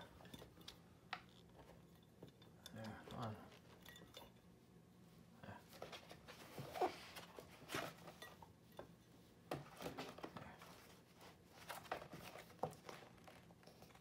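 Quiet handling of a large art book: scattered light clicks and paper rustles as a hand touches and smooths a page, with a brief low murmur of a voice now and then.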